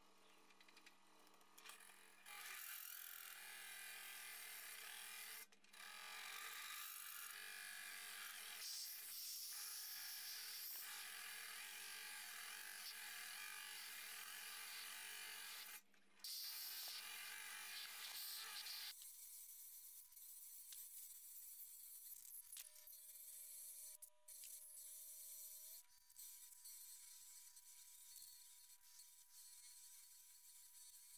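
Wood lathe spinning a wood-and-resin vase while a hollowing tool cuts inside it: a faint steady cutting hiss over a low hum, with two brief dropouts. After about 19 seconds the cutting hiss falls away, leaving a quieter steady high whine.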